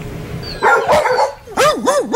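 Dogs penned in kennel crates: a short burst of barking about half a second in, then a dog howling, its pitch wavering up and down several times a second.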